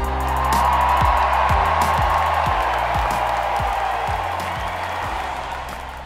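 Background music with a steady beat of about two strokes a second, overlaid with the sound of a large crowd cheering that swells at the start and slowly fades.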